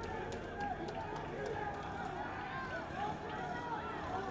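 Crowd of street protesters, many voices shouting and calling over one another.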